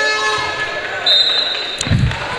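Indoor handball game on a reverberant hall court: a held horn-like tone fades out in the first half second, a high shrill tone sounds for under a second about a second in, and low thuds of the handball bouncing on the court come near the end.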